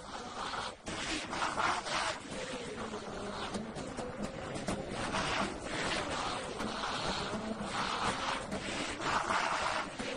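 Oud being played, with a few held low notes under repeated rough, hissy surges about once a second.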